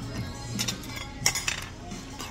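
Restaurant clatter: cutlery and dishes clinking in a few short sharp clicks, the loudest a little past a second in, over background music.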